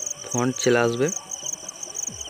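Crickets chirping in the background: a high, steady pulsing trill of several chirps a second that runs under a short burst of a man's speech.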